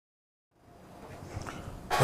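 Dead silence, then the faint hiss and hum of an open studio microphone with a small tick about a second and a half in, just before a man begins to speak.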